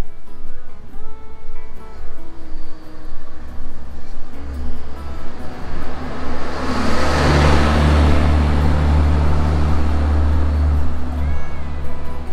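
Background guitar music, with a motor vehicle passing close by in the middle: its low engine rumble builds from about four seconds in, is loudest around seven to eight seconds and fades away near the end.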